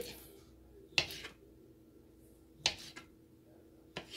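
Kitchen knife cutting through smoked sausage and striking a plastic chopping board: two sharp knocks about a second and a half apart.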